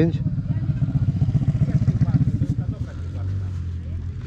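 Off-road engine idling with a quick, even putter that settles into a steadier low hum near the end.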